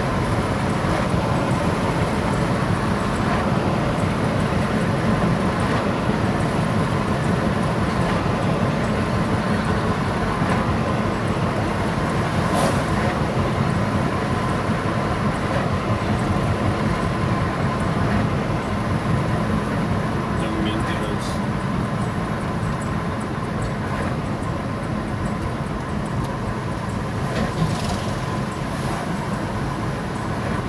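Car driving at steady speed, heard from inside the cabin: continuous road and tyre noise with a strong low rumble. A couple of brief knocks come through, about twelve seconds in and again near the end.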